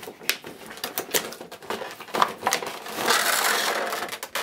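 A cardboard window box being opened and its clear plastic blister tray pulled out, with crinkling plastic and sharp clicks and scrapes. A longer stretch of crackling and scraping comes about three seconds in, as the tray slides free.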